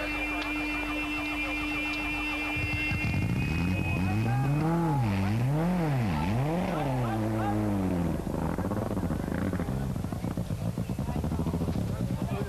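Turbocharged rally car engine, just restarted after a rollover, revved up and down several times about three seconds in, then running at low revs. The car is smoking from an oil leak onto the turbocharger and cannot drive on. Before the revving there is a steady tone.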